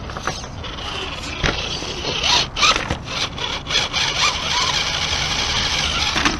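Axial SCX10 RC rock crawler working its way over rock close to the microphone: the electric drivetrain whirs, rising and falling with the throttle, while the tyres grind and scrape over the stone with many small clicks. The sound is loudest from about a second and a half in.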